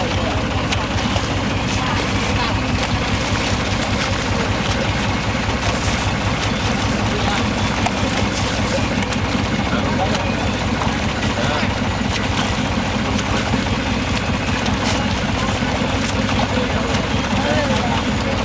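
Motorboat engine running steadily, with water rushing and splashing alongside.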